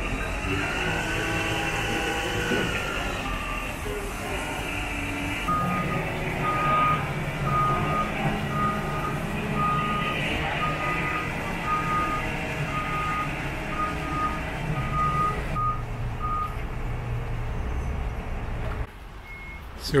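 Large boatyard forklift's engine running under load as it carries a 33-foot boat, its reversing alarm beeping repeatedly at one pitch, one to two beeps a second, for about ten seconds from about five seconds in. The engine noise drops away suddenly near the end.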